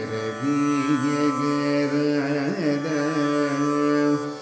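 Male Carnatic vocal in raga Gaulipantu, singing long held notes with gliding, oscillating ornaments over the steady drone of a tanpura plucked by the singer.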